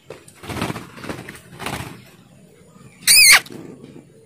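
A short, loud, high-pitched squeal about three seconds in, its pitch wavering and then dropping quickly at the end. Two softer rustling noises come before it.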